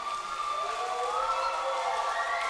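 A held electric chord from the band's stage instruments: a few steady notes sounding together, sliding slightly upward about a second in.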